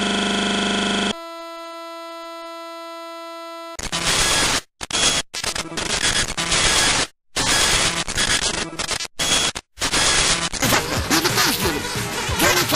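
Broadcast-breakdown glitch sound: a loud, steady electronic buzz cuts off about a second in and drops to a quieter steady tone. About four seconds in, harsh TV static hiss takes over and cuts out for an instant several times, the sound of a signal being interrupted.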